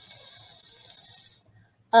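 A woman's voice drawing out a long, steady hissing "sss", sounding out the first letter of "sunny" while writing it.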